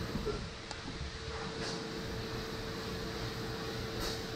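Steady mechanical hum with a constant mid-pitched tone under it, and a couple of faint ticks in the first two seconds.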